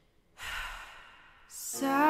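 A singer's audible breath in between sung lines, a rough noisy inhale about half a second in and a shorter, hissier one near the middle. Sustained keyboard chords come in near the end.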